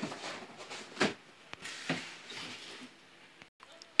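Handling noise from toy figures and the phone being moved around on a couch: rustling with a few light plastic knocks, the loudest about a second in.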